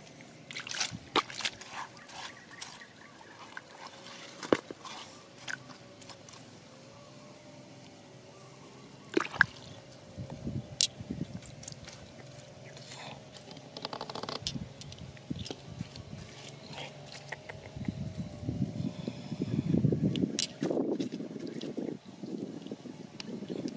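Fingers scraping and picking at waterlogged clay, with sharp clicks, wet squelching and dribbling water. The scraping grows louder and denser near the end.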